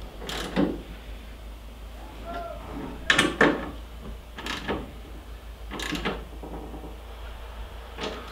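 Ratchet wrench hand-tightening the screws of a metal mounting bracket: four pairs of sharp metallic clicks a second or more apart, with a faint squeak about two seconds in.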